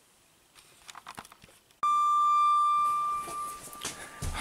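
A doorbell sounding one steady, high-pitched electric tone for about two seconds, starting suddenly about two seconds in: the delivery has arrived at the door.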